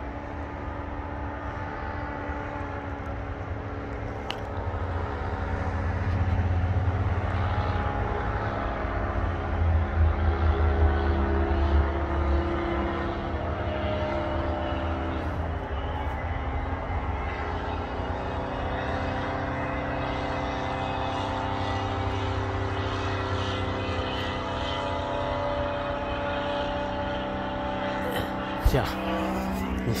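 Paramotor (powered paraglider) engine and propeller droning overhead as a steady, many-toned hum. It swells louder about six to twelve seconds in, dips briefly in pitch around fifteen seconds in, and ends with a sharp knock near the end.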